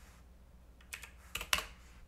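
Computer keyboard typing: a few sharp keystrokes bunched together between about one and one and a half seconds in, with quiet before them.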